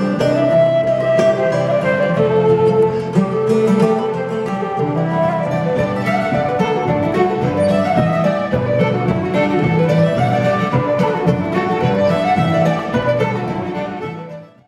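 Live folk tune played on flute and fiddle together over a plucked-string accompaniment, the melody running continuously above steady low notes; the level starts to drop near the end.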